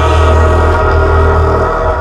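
Dark electronic music with a heavy, steady bass and held synth chords.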